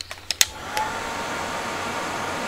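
A couple of clicks, then a heat gun starts up about half a second in and blows steadily with a faint high whine, drying freshly laid wet watercolour paint on paper.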